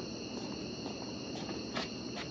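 Crickets chirping in a steady high-pitched night chorus, with a couple of faint brief clicks or rustles near the end.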